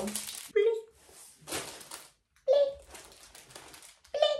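A young woman's brief vocal sounds: a few short syllables with pauses between them, and a short hiss of noise about a second and a half in.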